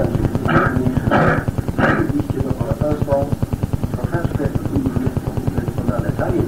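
A man's voice talking, recorded on an old audio cassette, over a low, rapidly pulsing buzz that runs steadily underneath.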